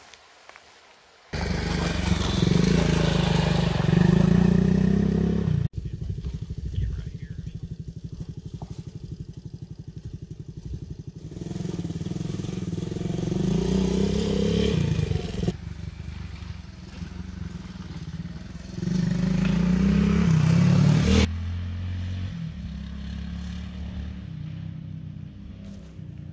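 Suzuki DR200's air-cooled single-cylinder four-stroke engine running, heard across several cut-together riding clips. After a brief near-quiet moment it comes in loud and revving. About six seconds in it cuts suddenly to a slower, evenly pulsing idle, then picks up and revs twice more before settling lower near the end.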